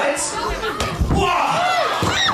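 Voices calling out over each other, with a dull thump about a second in.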